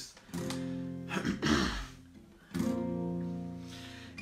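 Acoustic guitar chords strummed twice and left to ring out, about two seconds apart, with a throat clear between them.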